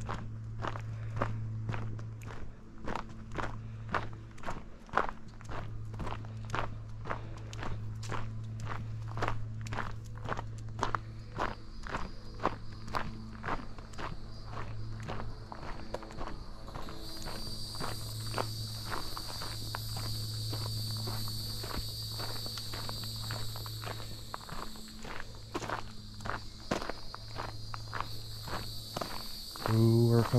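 A hiker's footsteps on a gravel forest trail, steady at about two steps a second. About halfway through, a high steady insect buzz sets in behind them.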